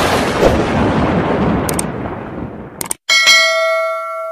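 Outro sound effects: a loud noisy rush under a video transition that fades over about three seconds, then a click and a bright bell ding ringing out, the subscribe-button and notification-bell chime.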